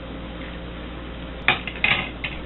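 Two sharp metallic clinks against a stainless steel saucepan, a third of a second apart, about one and a half seconds in. Before them there is only a steady low background hiss.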